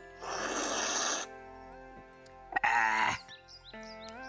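A man noisily slurps a sip of tea from a china cup for about a second, then lets out a short, loud groan with a wavering pitch, over background music with held notes.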